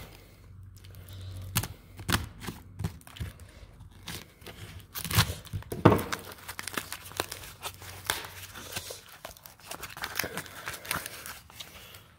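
A small taped cardboard package being torn open and its wrapping crinkled by hand, in irregular rips and rustles with the loudest tears about five to six seconds in.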